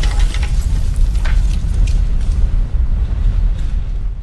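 Cinematic logo-intro sound effects: a loud, deep rumble with scattered sharp clattering hits of breaking debris.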